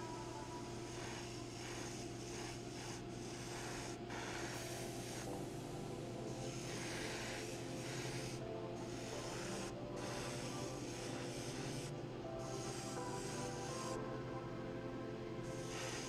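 Airbrush spraying a light coat of clear, a soft hiss of air and paint that stops for a moment several times as the trigger is let off between passes.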